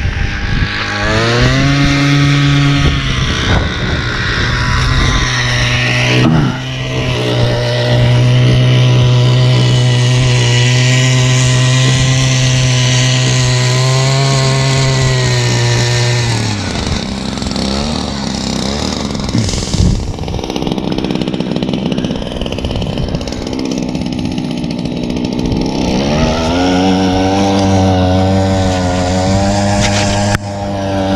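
Powered ice auger drilling through lake ice. The motor spins up about a second in, runs steadily under load and winds down about 16 seconds in, then spins up again near the end.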